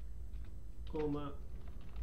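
Typing on a computer keyboard: a run of quick keystroke clicks as an address is entered, with a short spoken word about a second in.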